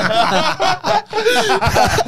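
Several men laughing hard together into close microphones, in repeated bursts of laughter with a short lull about a second in.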